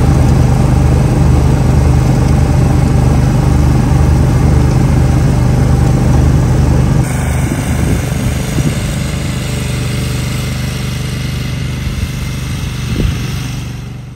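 Engine running steadily with a strong low hum. About halfway through the sound changes abruptly to a quieter, rougher engine sound, which fades out at the end.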